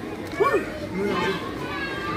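Background voices and children's chatter, with one short vocal exclamation about half a second in.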